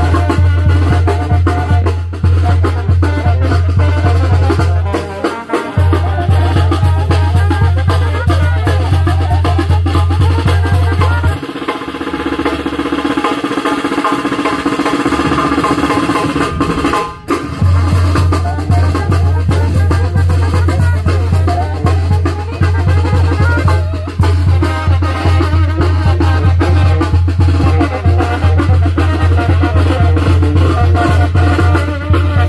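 Tamborazo band music led by loud, rapid drumming on the tambora bass drum and snare. The heavy drumming drops out for a moment about five seconds in and again for several seconds in the middle, then comes back.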